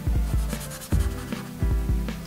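Rubbing, scribbling strokes of a drawing tool on paper as a dark area is shaded in, over soft background music.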